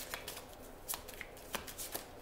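A deck of oracle cards handled and shuffled by hand, giving a few short, sharp card flicks at irregular intervals.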